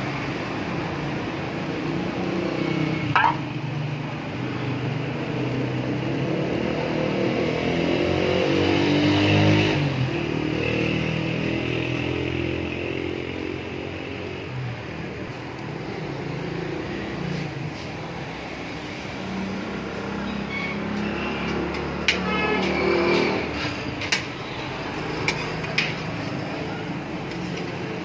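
Road traffic passing a street-food griddle; an engine swells and revs up about a third of the way in, then drops away. Under it, a flat steel griddle sizzles with frying eggs and buns, and a metal spatula scrapes and clatters on the plate a few times near the end.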